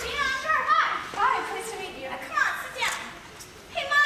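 Young performers' voices on stage, several talking and calling out, high-pitched and lively, heard from the audience in a large hall.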